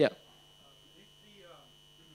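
Faint steady electrical hum, with a distant voice faintly under it.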